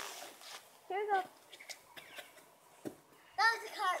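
A girl's voice saying "here we go", then a quiet pause broken by one short, soft thump about three seconds in, before she starts speaking again.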